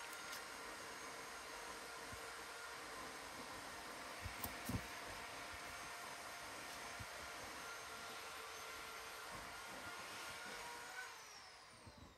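Faint, steady hum of a motorized power tool preparing firewood, with a few held tones. About eleven seconds in the tones slide down in pitch and the sound fades as the motor winds down. There are a couple of light taps about four and a half seconds in.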